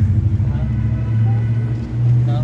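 A steady low mechanical hum, even in pitch, with faint voices above it.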